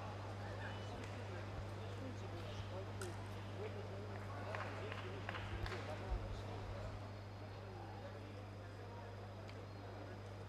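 Indistinct voices and chatter in a large, sparsely filled arena over a steady low electrical hum, with a few light knocks near the middle.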